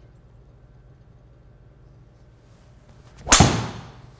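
Tour Edge EXS 220 three wood swung with a faint whoosh, then striking a golf ball off a hitting mat a little over three seconds in: one sharp, loud crack that dies away within about half a second. The strike sounds hot, a well-struck shot.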